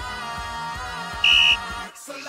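A referee's whistle blown once in a short, loud, steady blast a little past halfway through, marking a foul call. Background pop music with a steady beat plays throughout.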